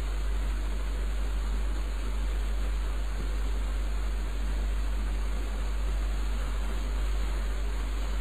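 Steady hiss with a constant low hum underneath: the background noise of the lecture recording, with no other sound.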